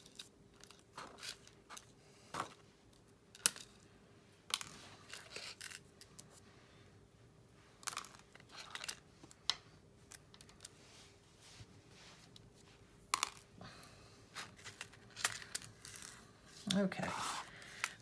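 Scattered small clicks and light rustles as spilled seed beads are picked up off a work mat by hand and dropped into a clear acetate box.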